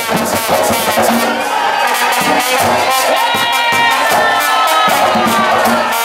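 Live plena music: hand-played barrel drums keep up a driving rhythm while a brass horn plays melody lines over them, with crowd noise mixed in.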